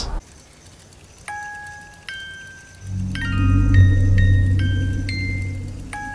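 Film soundtrack: a music box plays two slow, single ringing notes, then a quicker tinkling run of high notes. About three seconds in, a low ominous drone swells in beneath it.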